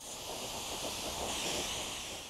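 Compressed-air, gravity-feed spray gun hissing steadily as it sprays primer.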